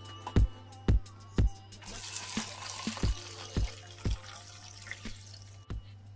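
Hibiscus drink poured from a pot through a metal mesh sieve into a plastic jug: liquid splashing steadily from about two seconds in until shortly before the end.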